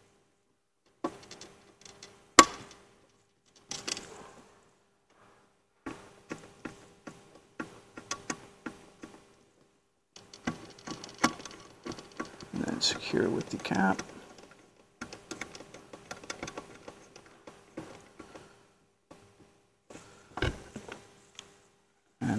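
Cable connectors being plugged in and threaded by hand: scattered small plastic clicks and the rustle of cable jackets, with a sharp click about two seconds in and a heavier thump near the end.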